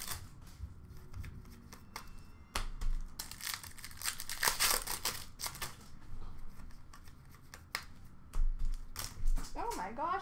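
Trading card pack wrappers crinkling and tearing as packs are ripped open and the cards handled, in irregular rustling spells with a few sharp snaps. A voice starts just before the end.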